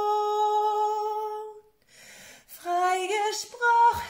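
A woman singing a German worship song a cappella, unaccompanied. She holds one long steady note for about a second and a half, pauses briefly, then sings the next line with moving pitch.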